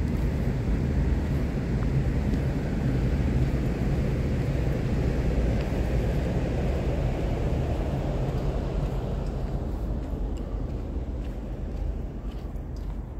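Distant engine noise: a steady low rumble that swells through the middle and fades near the end.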